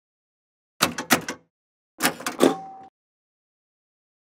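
Sound effects of an animated logo sting: two clusters of short, sharp hits, about a second in and about two seconds in. The second cluster ends in a brief ringing tone.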